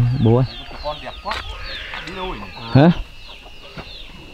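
Chickens clucking, with a steady run of short, high chirps that fall in pitch.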